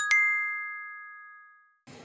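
A single bright chime sound effect: one bell-like ding that rings and fades away over about a second and a half.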